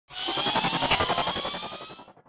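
Electronic intro sound effect for an animated logo: a buzzing, rapidly stuttering sweep that rises in pitch, then fades out near the end.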